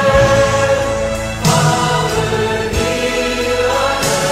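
Choir singing slow sacred music in long held chords, with a new chord coming in about a second and a half in.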